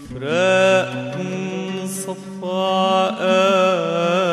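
Arabic song: a male voice holding long, wavering melismatic notes over a steady instrumental accompaniment, with a brief break in the line about a second in.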